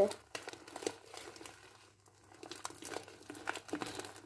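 Pink fluffy shaving-cream slime being squeezed and pulled apart by hand as borax activator is kneaded in: quiet, irregular crackles and squishes.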